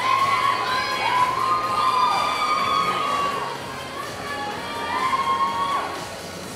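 Theatre audience cheering and screaming: many overlapping high-pitched voices hold long shrill calls and whoops that rise and fall. The calls are loudest through the first three seconds or so, ease off, then swell again briefly near the end.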